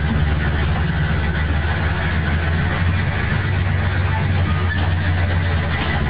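Mercedes-Benz OHL1316 bus's rear-mounted OM 366 inline-six diesel engine running at a steady speed, heard from inside the passenger cabin as a loud, even low drone. Recorded on a mobile phone, so the top end is cut off.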